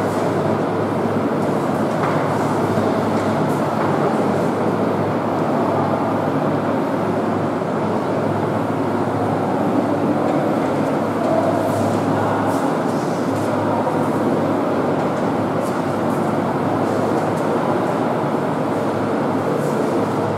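Steady background noise: an even rushing sound over a low hum, unchanging throughout.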